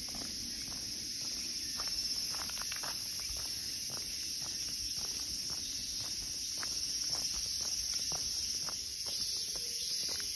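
A steady, high-pitched drone of cicadas in summer woodland, with the soft crunch of footsteps on a gritty path about twice a second.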